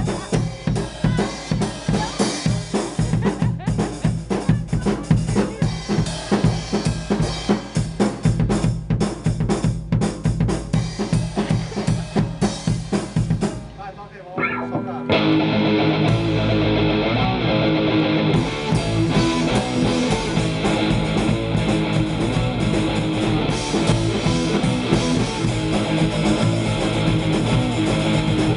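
Drum kit played at a fast beat, snare and bass drum hits coming in quick succession. About halfway through, after a brief break, distorted guitars and bass come in with the drums, and a hardcore punk band plays loud and steady.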